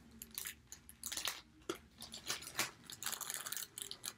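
Clear plastic packaging bag crinkling and rustling in the hands, as a run of irregular short crackles.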